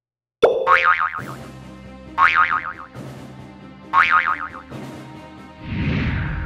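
Background music with cartoon boing sound effects: three wobbling, quavering boings about a second and three-quarters apart, the first coming right after a moment of silence, and a swell of sound near the end.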